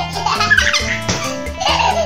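Children's background music with a steady beat, overlaid by a baby giggling in two bursts: one lasting about a second at the start, and a shorter one near the end.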